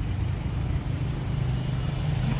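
A steady low engine hum, a motor running without change in speed.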